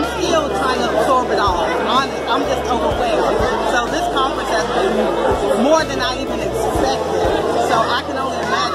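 Close talking voices over the chatter of a crowd of people.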